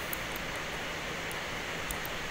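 Steady background hiss with no distinct event: the room tone heard through the narration microphone.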